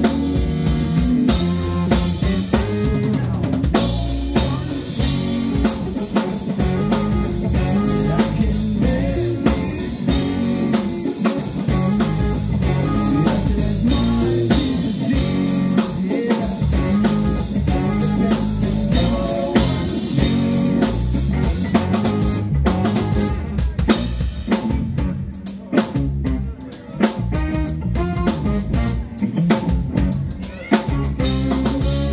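Live funk band playing an instrumental passage: drum kit, electric bass, electric guitar and keyboard together, with a steady beat. A few seconds before the end the playing thins out into short gaps and stabs.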